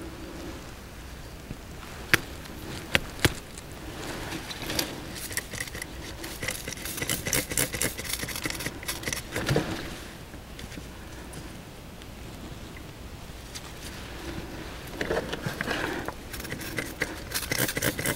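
Pebbles and gravel clicking and scraping as a gloved hand and a small hand tool dig through wet, stony soil. Two sharp clicks come about two and three seconds in, and clusters of small rattles follow later.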